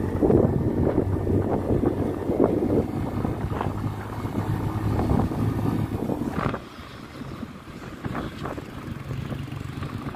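Road and wind noise from riding in a moving vehicle: wind buffeting the microphone over a steady low engine hum. The buffeting drops off about two-thirds of the way in, leaving a quieter run of road noise.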